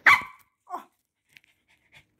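A Cavalier King Charles spaniel gives one short, sharp bark right at the start, then goes quiet.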